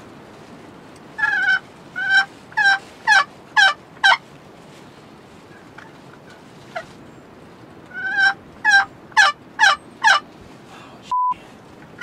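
Turkey yelping: two runs of about six loud, falling yelps each, several seconds apart. Just before the end comes a short electronic beep.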